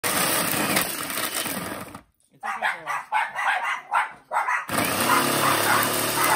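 Food processor motor running, its blade chopping and grating hard baking chocolate into small bits. About two seconds in the sound cuts out briefly, and a run of short, loud vocal calls about every half second follows before the processor runs again near the end.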